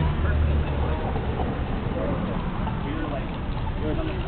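City street at night: a low vehicle rumble that fades about half a second in, over steady traffic noise and faint distant voices.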